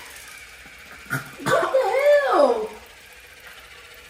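A woman's wordless vocal sound, about a second long, wavering up and down in pitch, just after a brief click about a second in.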